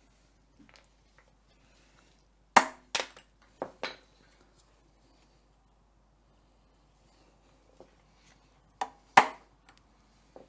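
Metal tools clinking and knocking in short separate hits: a loud pair a few seconds in, two softer ones just after, then a pause and another loud pair near the end.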